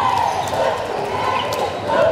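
Basketball game sounds in a gym: a ball bouncing on the hardwood court, with crowd voices throughout.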